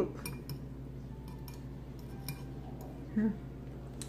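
A metal utensil clinking lightly against a bowl a few times, in short separate clicks, while noodles are scooped up.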